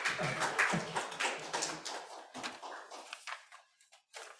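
Audience applause that starts at once and thins out, dying away after about three and a half seconds.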